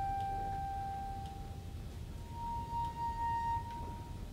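Wine glasses rubbed around the rim, ringing with pure sustained tones. One tone fades out in the first couple of seconds, then a second, slightly higher tone sounds for about a second and a half before stopping.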